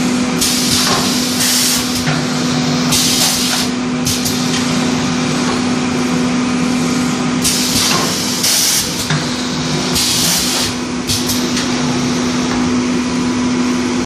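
Pneumatic paper cake mould forming machine cycling: short hisses of exhaust air as its air cylinders stroke, some in pairs about a second apart and repeating every few seconds, over a steady machine hum.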